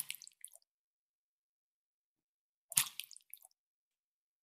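Two brief wet, squishy sound effects about three seconds apart. Each is a sharp onset followed by a few faint drip-like blips, with silence between them.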